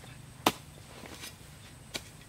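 Hoe chopping into soil: two strikes about a second and a half apart, the first the louder.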